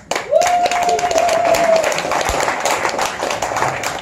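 Audience clapping and applauding in a small venue, with one long steady high call from the crowd held for about a second and a half near the start.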